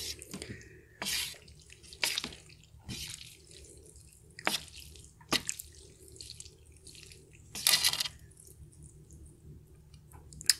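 Chopsticks stirring and lifting sauce-coated Samyang fire noodles in a metal tray, giving short wet squelches and clicks at irregular intervals, about six in all.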